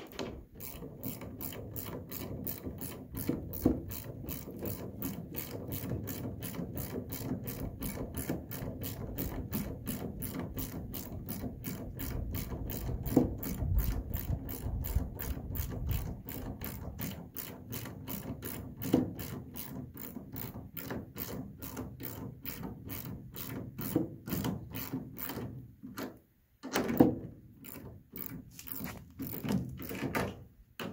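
Hand socket ratchet clicking steadily, about three clicks a second, as a bolt is turned through a wooden deck-board trailer side. It pauses briefly near the end, then gives a few more strokes, with a few louder knocks along the way.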